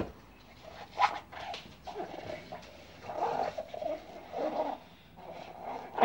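A soapy sponge rubbed around the inside of a ceramic mug, squeaking and scraping in irregular strokes, with a light knock about a second in.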